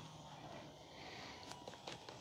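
Near silence with faint outdoor hiss. A faint steady hum from the RC plane's electric motor and propeller fades out just after the start, and a few faint ticks come near the end.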